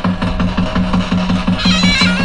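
Bulgarian folk wind instruments playing a high melody over a steady drone, with an even drum-like pulse about five times a second. The high melody comes forward about one and a half seconds in.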